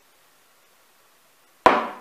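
A single sharp knock on the tabletop near the end, dying away quickly, as of a glass or jar set down.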